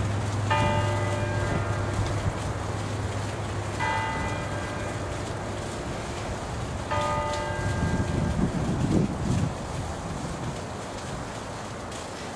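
Church bells from a six-bell ring cast by Ottolina, swung full circle: three single strokes about three seconds apart, each ringing on and fading. A low rumble comes in louder about eight seconds in.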